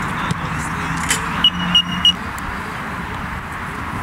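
Football passing drill: a few sharp ball kicks over a steady background hum and noise. About a second and a half in come three short, high beeps in quick succession.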